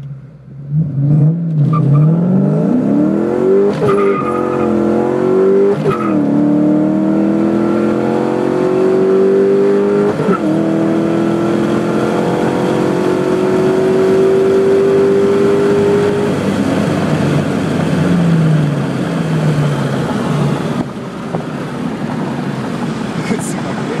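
Ford Mustang Mach 1 engine at wide-open throttle on a launch. The revs climb hard and drop back at three gear changes, about 4, 6 and 10 seconds in, then climb steadily. Around two-thirds of the way through the throttle comes off and the engine winds down.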